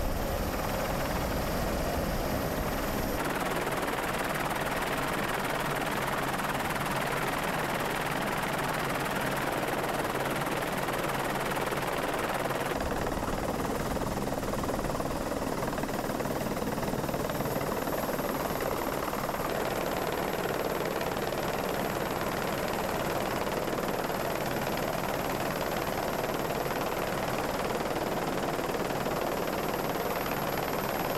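Steady rushing noise of a camera helicopter's rotor and engine mixed with wind. Its tone shifts abruptly about three seconds in and again about thirteen seconds in.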